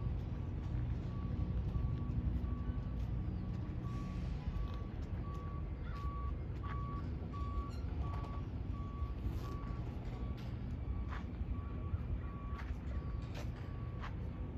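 A vehicle's backup alarm beeping at a steady pace, one unchanging tone about three times every two seconds, over a steady low rumble with scattered light clicks.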